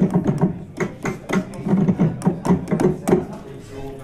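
Yamaha Montage synthesizer playing a patch of quick, rhythmic, percussive notes over a low pitched part, with the Super Knob changing several parameters of the sound at once.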